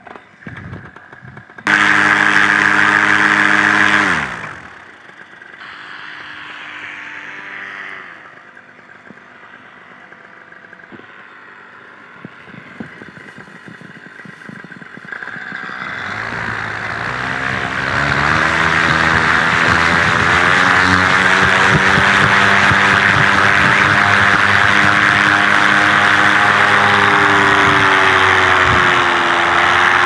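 Paramotor engine and propeller: a short burst at high power near the start that winds down, then about halfway through it is run up to full takeoff power and holds steady for the launch and climb.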